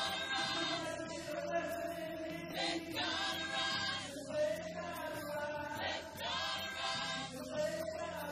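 Gospel choir singing behind a male lead vocalist, sustained chords swelling in repeated phrases.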